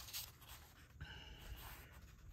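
Soft rustle of the thin paper pages of a thick Sears, Roebuck catalog as a page is turned and laid flat, loudest at the very start and then faint.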